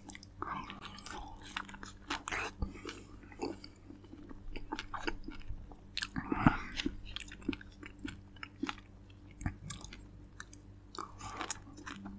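A person chewing and biting fresh fruit close to the microphone: irregular wet clicks and smacks of the mouth, with the loudest bite about six and a half seconds in.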